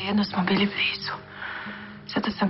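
Soft, close, whispered speech between two people, over quiet background music with held notes.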